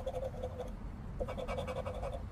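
A scratcher coin scraping the latex coating off a $20 Gold Rush Limited scratch-off ticket in rapid back-and-forth strokes. There is a short pause a little past the middle before the scraping starts again.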